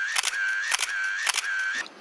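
Camera shutter sounds: about four in quick succession, roughly half a second apart, each a sharp click with a short whirring tone.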